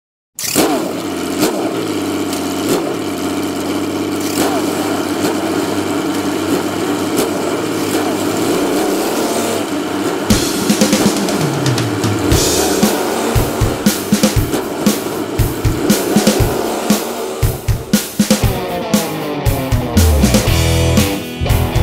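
Rock music intro: a held, layered sound at first, then a steady drum beat comes in about halfway, with rising sweeps near the end.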